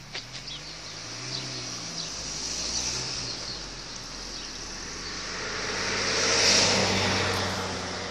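A car driving past on the road: engine and tyre noise build to their loudest about six and a half seconds in, then fade away.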